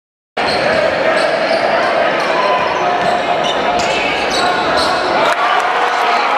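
Junior basketball game sound in a sports hall: a basketball bouncing on the hardwood court, with voices of players and spectators. It starts abruptly after silence and changes abruptly about five seconds in.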